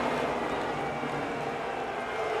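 Grandstand crowd booing, a steady mass of voices, in disapproval of the caution that hands the race win to the leader.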